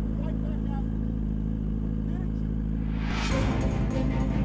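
Sport motorcycle engine idling steadily, with faint voices over it. About three seconds in, a rising rush of noise sweeps up and music comes in.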